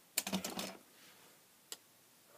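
Plastic casing of a plug-in power-saver unit handled in the hand: a quick run of light clicks and clatter in the first second. Near the end a single sharp click as a metal screwdriver tip meets the plug's pins to short them, drawing no spark because its capacitor holds no charge.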